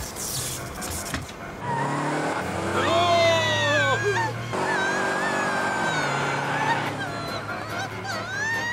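A man yelling loudly in alarm, long and wavering in pitch, starting about two seconds in. Under it runs a steady low drone.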